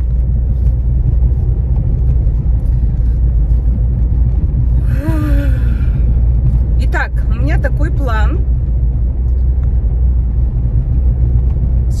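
Steady low rumble of a car's road and engine noise inside the cabin while driving. It is broken by a short vocal sound with a falling pitch about five seconds in and a second or so of the driver's voice about seven seconds in.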